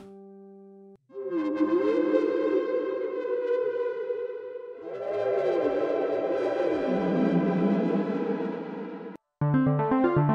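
Synthesizer chords played on a ROLI Seaboard RISE through an MPE synth patch, two long held chords whose notes bend up and down in pitch as the fingers slide on the soft keys. Near the end the sound cuts off, and a brighter patch plays quick repeated notes.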